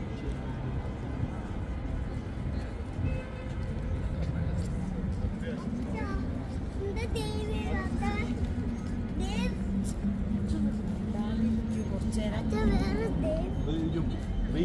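City street ambience at night: scattered voices of people nearby over a steady low rumble of traffic, with a low steady hum through the middle.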